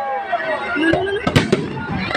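Aerial fireworks bursting overhead, with a loud sharp bang about one and a half seconds in and a smaller pop before it.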